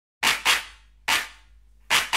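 Four sharp electronic noise hits in a syncopated beat, the first two close together, each dying away quickly over a faint low hum.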